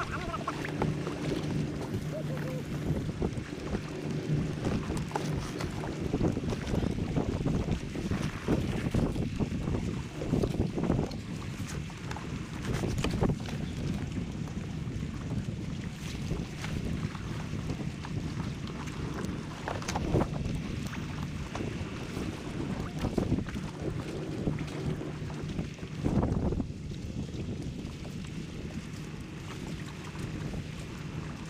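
Wind buffeting the microphone on open water, gusting unevenly with several stronger surges, over a faint steady low hum.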